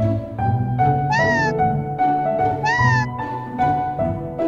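Two short squeaky calls from a Moflin AI pet robot, each rising then falling in pitch, about a second and a half apart, over background music with sustained notes.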